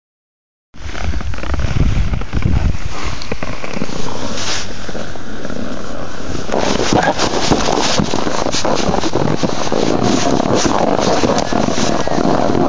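Wind buffeting a phone microphone outdoors. It starts as a heavy low rumble, then from about six and a half seconds in becomes a rougher rushing noise broken by many small clicks and crackles.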